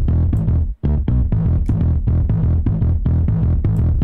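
UJAM Virtual Bassist SLAP virtual instrument playing a sampled slap-bass intro/fill pattern in quick, punchy notes. It cuts out briefly just under a second in as a new pattern is triggered, then carries on.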